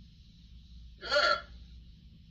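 A voice saying one short 'yeah' about a second in, over a faint steady hum and hiss of room tone.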